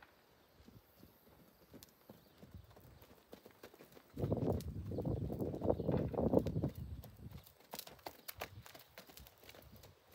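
Hooves of a mare and foal trotting on loose dirt, with scattered sharp hoof clicks. About four seconds in, a louder low rumbling noise rises for around three seconds and then eases off.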